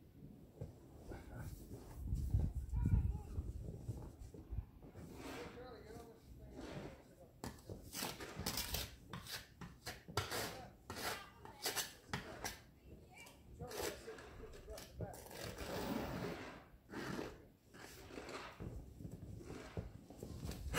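Snow being pushed and scraped off a car's windshield by a gloved hand and a small plastic ice scraper: a string of short brushing and scraping strokes, thickest in the second half.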